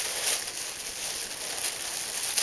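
Thin plastic bag rustling and crinkling in irregular bursts as hands work at a knot tied in it.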